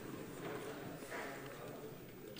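Faint footsteps of a man walking across the hard floor of a large parliament chamber to the rostrum, over the low murmur of the hall.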